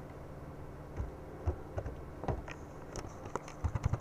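Scattered clicks of computer keys and a mouse, starting about a second in and coming faster near the end, over a low steady hum.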